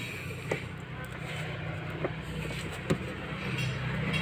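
A few light clicks as hands handle and tighten the metal hydraulic pipe fitting on a car's clutch master cylinder, over a steady low hum.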